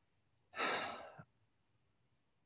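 A man's single audible sigh-like breath, lasting under a second, about half a second in.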